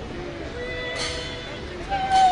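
A woman singing long, wavering notes with a wide vibrato, stepping up to a higher, louder held note near the end.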